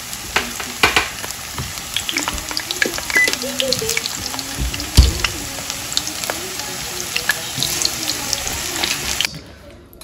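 Plantain slices sizzling in hot oil in a frying pan: a steady hiss full of quick crackles, with one sharp pop about five seconds in. The frying cuts off suddenly just before the end.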